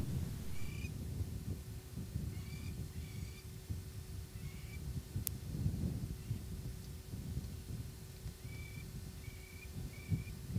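A bird calling in short, high whistled notes, a few scattered early on and a quick run of them near the end, over a steady low rumble. A single sharp click comes about halfway through.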